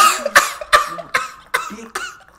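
A man laughing hard in a run of sharp, breathy bursts, about two or three a second.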